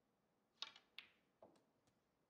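Faint, sharp clicks of snooker balls during a shot: the cue tip striking the cue ball, then balls knocking together, about five clicks within a second and a half.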